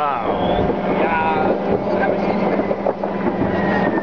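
Ships' horns of boats in the harbour sounding a long, steady low note, blown to greet the new year, with voices over it.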